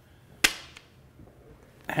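Steel chef's knife blade snapping onto a magnetic knife strip: one sharp click about half a second in with a short ringing tail, then a faint tick.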